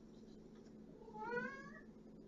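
A house cat giving one meow, rising in pitch, about a second in; the owner takes the meowing for a sign the cat is lonely.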